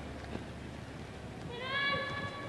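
Low, steady noise of play in an indoor soccer hall, then about one and a half seconds in a player's long, high-pitched shout that rises slightly and holds.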